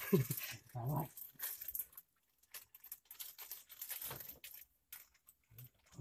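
A brief muffled voice in the first second, then faint, scattered clicks and rustles of hands working a fishing hook, line and bait, with silent gaps between.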